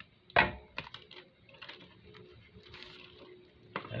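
A greeting card and its envelope being handled and opened on a tabletop: a sharp knock about half a second in, a few light taps, and soft paper rustling, with another tap near the end.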